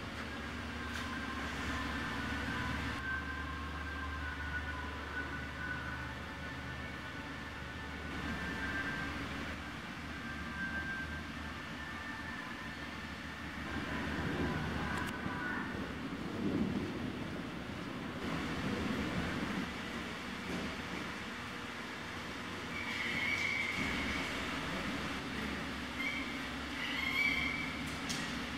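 Steady low mechanical rumble and hum of room noise inside a large hangar, with faint higher tones coming and going.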